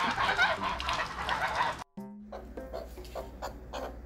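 Domestic geese honking and calling together for about two seconds, then a sudden cut to background music with a steady beat.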